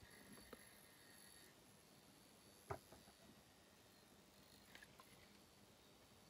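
Near silence, with a faint, steady high tone from a piezo buzzer wired into a K-II EMF meter that stops about a second and a half in; the meter is picking up the field of a fluorescent light. A single light click about halfway through.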